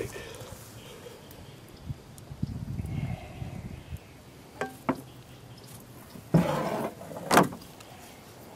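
Paddling a canoe: scattered clunks and clicks of the paddle against the hull, a longer rush of noise a little past halfway, and a sharp knock near the end.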